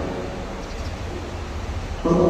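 Steady hiss of room noise in a large church hall, in a pause between spoken lines.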